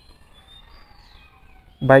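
Faint bird chirps over quiet outdoor background, followed by a man's voice starting near the end.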